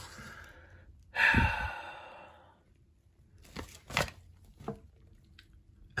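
A man's breathy sigh about a second in, fading out, followed by a few light taps and rustles of paper instruction sheets being handled.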